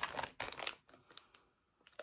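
Thin plastic wax-melt clamshell crinkling and clicking as it is picked up and handled: a quick cluster of small clicks in the first second, then quiet, with one more click near the end.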